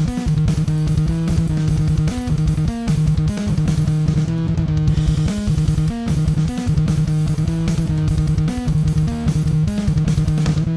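Electric bass played through a Sinelabs Basstard fuzz pedal, a reproduction of the ColorSound Bass Fuzz. A thick, fuzzed riff holds one low note and hops briefly to a higher note every second or so, with short breaks between phrases.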